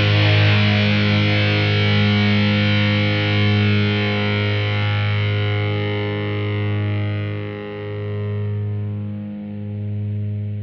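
Instrumental heavy metal: a distorted electric guitar chord held and left to ring, slowly fading, its brightness dying away over the second half.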